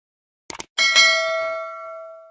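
Subscribe-button animation sound effects: a quick double mouse click about half a second in, then a single notification-bell ding that rings on and slowly fades.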